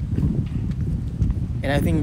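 Low rumble of wind and handling on a handheld camera's microphone while walking, with faint footsteps; a man's voice starts near the end.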